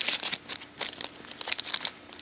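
Crimped foil wrapper of a Garbage Pail Kids trading-card pack being torn open and crinkled by hand, a quick run of irregular crackles.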